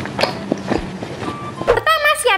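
Close-miked wet chewing of seafood balls in spicy broth, with soft mouth clicks and smacks. Bright music starts near the end.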